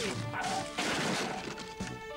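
Cartoon crash sound effect: a noisy smash lasting about a second, starting around half a second in, over background music with held notes.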